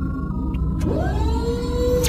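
Synthetic intro-animation sound design: a deep steady rumble under sustained electronic tones, with a couple of faint clicks and a tone that swoops upward about a second in and then holds.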